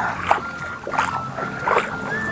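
Small waves lapping gently on a sandy shore, with background music holding a steady melody line over it.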